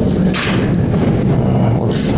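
Steady low background hum, with a short hissing burst about half a second in and two more near the end.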